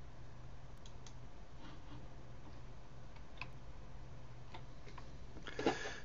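iMac G5 ejecting a DVD from its slot-loading drive after the keyboard's eject key is pressed: a quiet, low steady hum with a few faint, scattered clicks.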